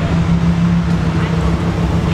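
Lamborghini Huracán Performante's V10 engine idling close by, a steady low hum.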